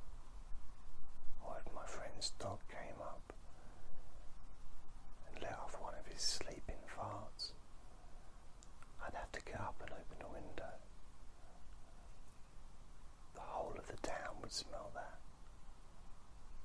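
Soft whispered speech in four short phrases, separated by pauses of a second or two.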